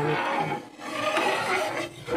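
Metal spatula stirring and scraping a thickening maja blanca mixture of milk, cream corn and cornstarch against the pan, an uneven rasping sound.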